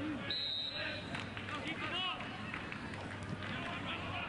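Soccer stadium ambience of crowd and player voices, with a short, steady, high-pitched whistle blast about a third of a second in: the referee's whistle restarting play with the kickoff after a goal.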